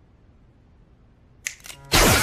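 Cartoon sci-fi laser gun effect: after a stretch of faint quiet room tone, a few sharp electric crackles come in about one and a half seconds in and build into a loud laser blast right at the end.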